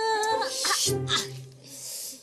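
A woman's wordless, whining vocal sound near the start, over soft background music.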